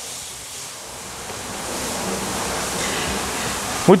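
A steady rushing noise that grows louder over the first two seconds and then holds, with a faint low hum under it.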